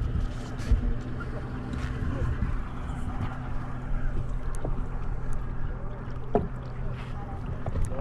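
A steady low engine hum, like a boat motor idling, under wind and water noise, with a few sharp knocks; the clearest knock comes a little after six seconds in.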